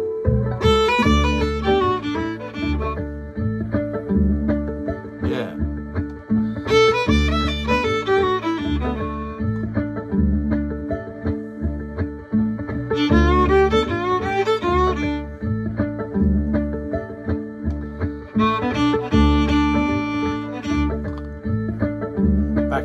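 Violin playing four short blues fiddle phrases in D, each a couple of seconds long with pauses between them, over a steady backing groove with bass and a rhythmic beat.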